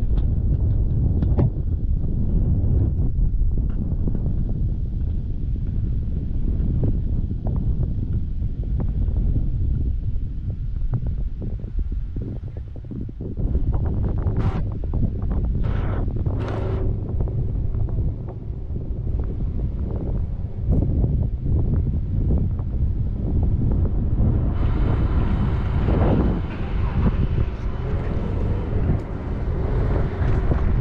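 Wind buffeting the microphone: a loud, unsteady low rumble. A few brief higher sounds come about halfway through, and a steady hiss joins near the end.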